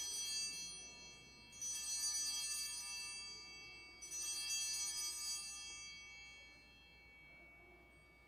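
Altar bells (a cluster of small hand bells) shaken three times, about two and a half seconds apart, each ring fading away. They mark the elevation of the consecrated host at the consecration.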